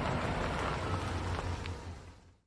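Pickup truck driving, a steady rushing road noise with a low rumble and faint crackles, fading away near the end.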